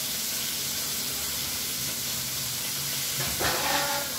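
Steady hiss of a kitchen tap running into a steel sink while dishes are washed. A brief ringing sound comes about three seconds in.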